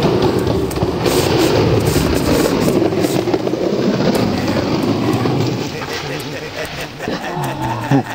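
Skateboard wheels rolling on pavement, a steady rough rumble that eases after about five and a half seconds. A voice is heard near the end.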